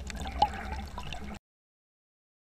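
Water gurgling with small drips, faint and irregular with one sharper drip about half a second in, then cutting off abruptly.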